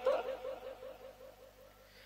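A man's voice trailing off at the end of a word and fading away over the first half-second, followed by a pause of faint room tone.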